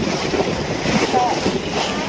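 Wind buffeting the microphone over a steady rush of sea water beside a boat's hull, with a brief voice sound about a second in.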